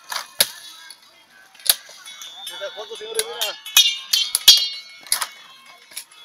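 Machete strokes chopping sugarcane stalks: a series of sharp cracks with a light metallic ring, several in quick succession about four seconds in.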